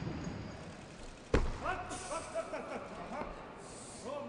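A single heavy thud about a second in, a loaded barbell dropped onto the lifting platform after a clean-and-jerk attempt, followed by raised voices.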